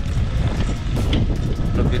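Wind buffeting the camera microphone on a moving bicycle: a steady, loud low rumble.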